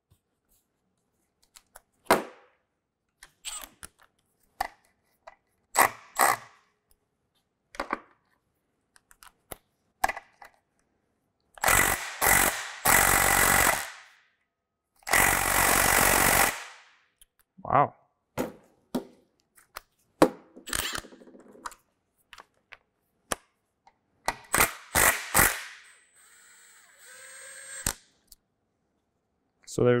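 Power tool running in two bursts of a couple of seconds each, backing out the bolts of the timing-chain idler sprockets, among scattered metallic clicks and clinks of tools and parts.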